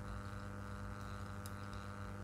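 Steady low electrical hum with a faint buzz of higher overtones, mains hum picked up by the microphone setup, with one faint tick about one and a half seconds in.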